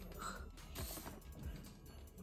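Faint rustling of gift wrap and card, with light scattered clicks, as wrapped presents are handled and a greeting card is taken out.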